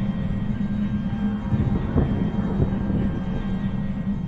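Eerie background music: a steady low drone, with a rumbling swell about halfway through.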